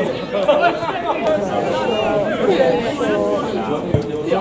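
Several people's voices talking and calling out at once, overlapping into indistinct chatter. A single short thump sounds near the end.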